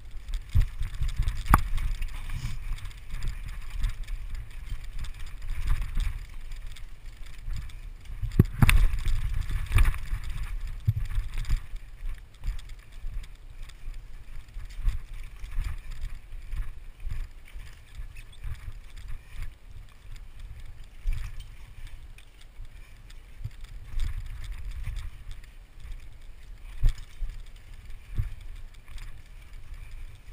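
Mountain bike ridden down a rough forest singletrack: a constant low rumble with frequent knocks and clatter from the bike over the uneven ground, heaviest in a run of hard knocks about nine seconds in.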